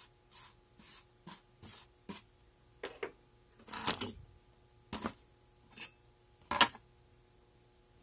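A metal rod pushing and scraping oil-bonded Petrobond casting sand across a textured metal tray: a string of short, irregular scrapes and brushes, the sharpest one about six and a half seconds in.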